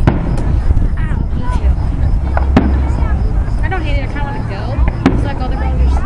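Aerial fireworks shells bursting: three sharp bangs about two and a half seconds apart.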